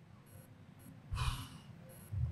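A man's single short, audible breath into the microphone about a second in, during a thinking pause; otherwise quiet room tone.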